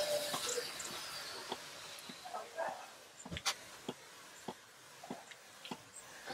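Faint sounds of a hand pump-up pressure sprayer being worked: a light hiss at first, then a series of irregularly spaced sharp clicks.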